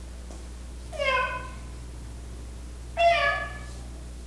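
A man imitating a cat's meow with his voice: two drawn-out calls, one about a second in and a louder one near the end, each falling slightly in pitch.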